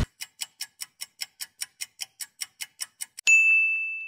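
Quiz countdown timer sound effect: even ticking at about five ticks a second, then a bright ding a little over three seconds in that rings out as the correct answer is revealed.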